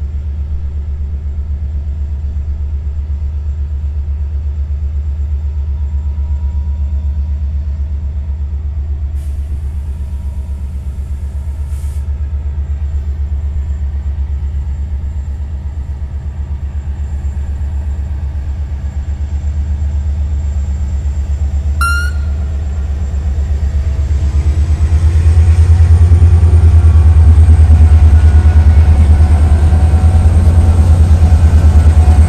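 EMD-engined CFR Class 64 diesel-electric locomotive running with a steady low rumble as it draws slowly nearer, growing much louder over the last few seconds as it comes alongside. A brief high squeak sounds about two-thirds of the way through.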